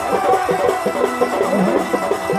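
Live folk dance music: a barrel drum played by hand, beating a rhythm under a repeating melody.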